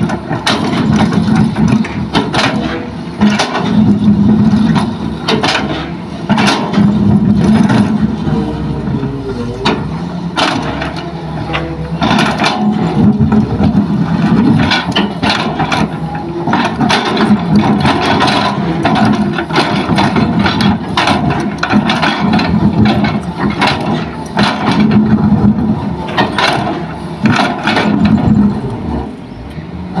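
Hitachi hydraulic excavator's diesel engine running under load as the bucket digs, its note swelling and easing every few seconds. Frequent sharp cracks and scrapes of rock and soil against the steel bucket run through it.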